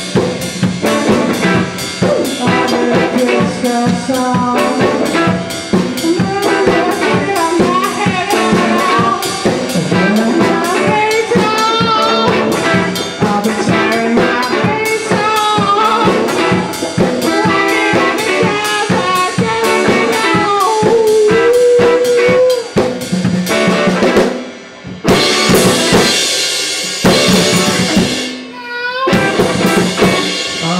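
Live rock duo playing loud, with electric guitar over a busy drum kit: snare, bass drum and rimshots. The playing breaks off briefly twice near the end.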